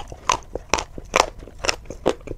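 Close-miked crunchy chewing: a mouthful of a hard, brittle coated bar crunched between the teeth, with four sharp crunches about twice a second.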